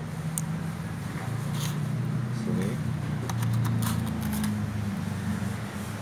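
Mains plug being pushed into a floor power strip: several light clicks and rattles, clustered between about three and four and a half seconds in. A steady low hum runs underneath.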